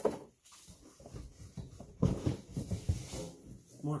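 Cardboard packing pieces being pulled out of a heater's shipping box: irregular rustling, scraping and crackling of cardboard, getting louder about halfway through.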